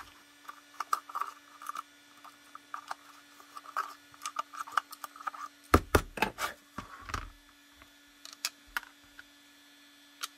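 Small hand tool scraping and clicking against a Kydex holster shell as its holes are cleaned out, followed a little over halfway through by a cluster of louder knocks and clatter as the shell is handled. A steady low hum runs underneath.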